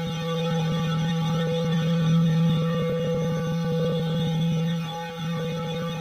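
Effects-processed logo music reduced to one low, steady droning tone with a stack of overtones, held at the same pitch throughout and dipping briefly in loudness about five seconds in.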